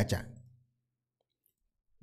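Speech trailing off in the first half-second, then complete silence.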